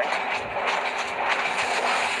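Steady running noise of a moving passenger railway carriage heard from inside a compartment, with faint knocks and clatter.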